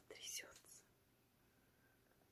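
A soft whisper of under a second at the start, then near silence: room tone.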